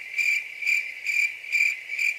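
Cricket chirping, a high single-pitched chirp repeated evenly about twice a second. It starts abruptly out of dead silence, like a comic 'crickets' sound effect for an awkward pause.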